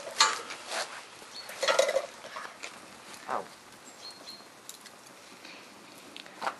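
Metal clinks and scrapes of a poker against a steel cup and fire basket with a burning tennis ball in it, loudest near the start and around two seconds in. A short 'au' a few seconds in, then only faint crackling from the fire.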